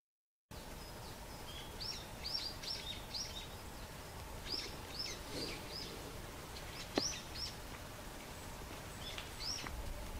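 Forest ambience with small birds giving short, high chirps in several quick runs, starting after about half a second of silence. A single sharp click sounds about seven seconds in.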